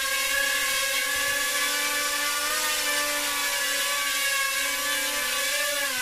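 DJI Tello mini quadcopter flying, its small motors and propellers giving a steady whine made of several stacked tones that waver slightly in pitch.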